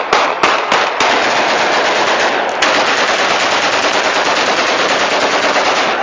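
Celebratory gunfire: a few separate shots in the first second, then continuous rapid automatic fire.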